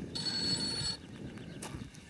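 A phone ringing with an electronic ringtone, a steady tone lasting about a second from the start and then cutting off.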